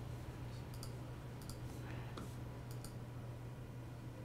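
Faint, scattered clicks from working a computer's mouse and keyboard, over a steady low hum.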